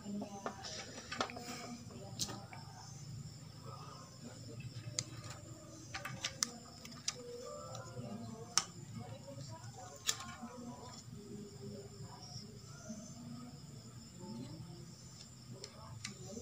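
Faint rustling and scattered small clicks of hands handling a television circuit board and its wiring, with a few sharper clicks, the loudest about eight and a half and ten seconds in.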